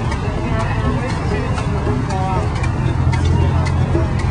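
People talking faintly in the background over a steady low rumble, with scattered faint clicks.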